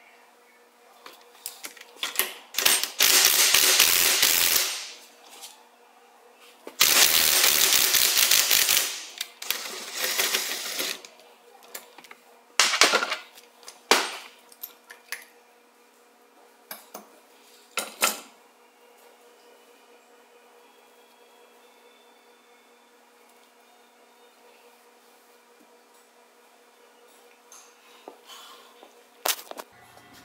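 Cordless impact wrench hammering on a bearing puller's screw in two bursts of about two seconds each, then shorter bursts, pulling the tapered carrier bearing off a Dana 44-type differential carrier. A few sharp metallic clinks of tools follow.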